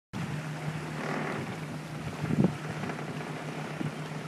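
Boat under way: a steady low engine hum under the wash of choppy water and wind on the microphone, with one brief thump about two and a half seconds in.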